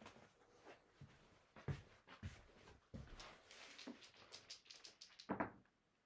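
Faint clicks and clacks of casino chips being stacked back into a chip rack, with a quick run of clicks about four seconds in and a louder clack near the end.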